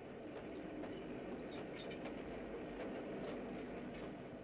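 Steady low rumble of a moving railway carriage, with a few faint ticks through it.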